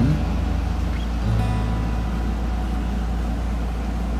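A steady low hum, with the tail of a guitar tune fading out at the very start.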